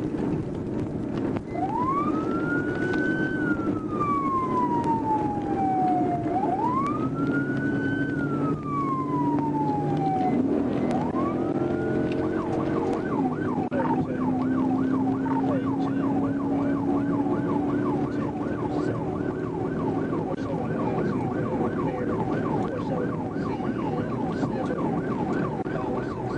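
Police cruiser siren on a wail: two slow cycles, each rising and then falling over about five seconds. From about twelve seconds in it switches to a fast yelp. Underneath runs the cruiser's steady engine and road noise as it accelerates hard at highway speed.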